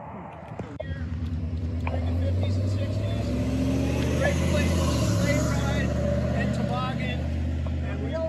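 A box truck driving past on the road, its engine and tyre noise swelling over the first few seconds, loudest mid-way, and easing off near the end, with people talking faintly underneath.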